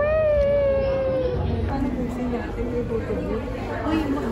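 One high, drawn-out call lasting about a second and a half, rising sharply at its start and then sliding slowly down, followed by low chatter.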